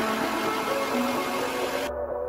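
Background music over a steady rushing hiss of a heat gun blowing hot air to dry paint on a crankbait lure; the hiss cuts off suddenly near the end.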